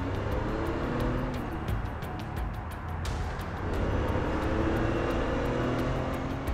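Car engine sound effect rising in pitch as the vehicle accelerates, twice in succession, over background music with a steady beat.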